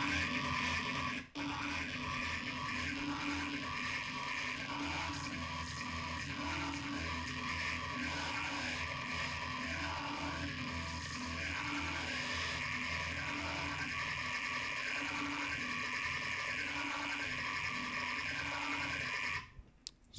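Dubstep growl bass from a Native Instruments Massive synth patch (Wicked wavetables through a Scream filter), held on a low G2 note and looping with a warbling, wobbling modulation that repeats about once a second. It breaks off briefly about a second in and stops shortly before the end. The producer finds the modulation a little too busy and too fast.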